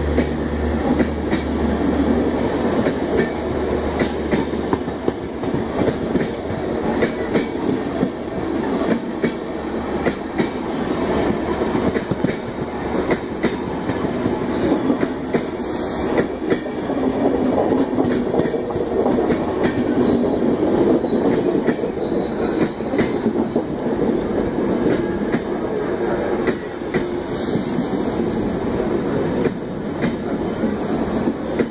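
Passenger coaches of a passing express train rolling by at close range on the adjacent track: a steady rumble of wheels on rail, with repeated clicks as the wheels cross the rail joints. A low hum from the train's diesel generator car fades away in the first few seconds.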